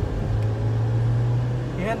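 A man's voice held on one low, steady hum-like tone for about a second and a half, with no word shapes, heard over the low rumble of a car cabin while driving. Speech starts right at the end.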